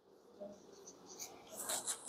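Faint strokes of a marker pen writing on a whiteboard.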